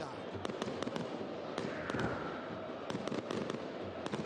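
Fireworks and firecrackers going off in many sharp, irregular bangs over the noise of a stadium crowd.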